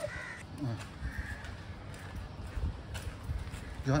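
Two short, high calls of a bird, crow-like caws, near the start and about a second in, over a quiet open-air background.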